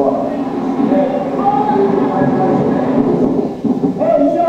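Hurricane-force wind blowing steadily, a dense train-like rush, from camcorder footage of Hurricane Katrina played back through a hall's speakers, with voices under it.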